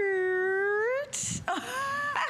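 A woman's drawn-out 'ooh' of delight, held for about a second with its pitch dipping and then rising. It is followed by a short breathy hiss and the start of another spoken word.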